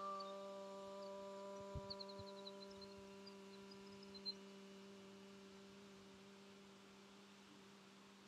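A low steady ringing tone with a few overtones, slowly dying away, with a few faint bird chirps.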